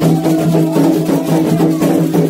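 Candomblé sacred music: atabaque hand drums playing a steady rhythm, with sustained sung voices over them.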